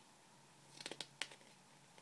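Quiet room with a quick cluster of three or four crisp clicks and rustles about a second in, from hands handling a paperback picture book.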